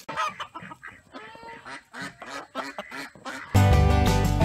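Faint, irregular calls of farm poultry, most like ducks or geese. About three and a half seconds in, loud country-style guitar music cuts in.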